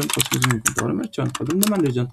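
Computer keyboard typing, a run of key clicks, with a voice talking over it.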